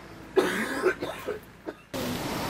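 A person coughing: a run of several short coughs starting about a third of a second in, the first the loudest.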